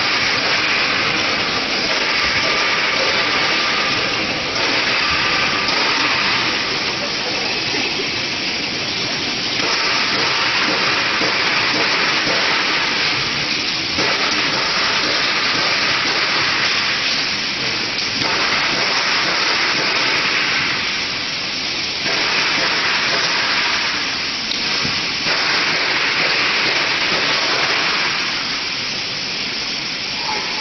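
Citrus fruit sorting machine running: its roller-chain conveyor carrying fruit makes a dense, steady noise that swells and dips every few seconds.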